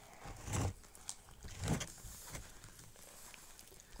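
Faint sticky squishing of bubble-gum slime being kneaded and pulled by hand, with a couple of slightly louder soft squishes about half a second and a second and a half in.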